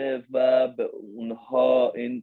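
A man's voice talking, with no other sound.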